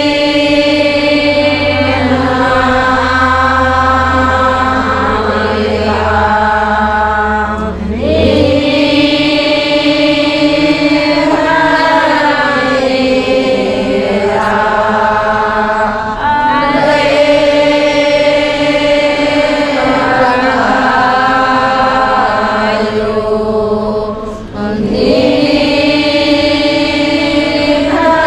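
A large group of women chanting a prayer together in unison, in long sustained phrases of about eight seconds, each ending in a short pause for breath.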